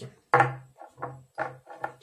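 Small glass shot glasses set down on a wooden tabletop: a sharp knock with a short ring about a third of a second in, then three lighter knocks.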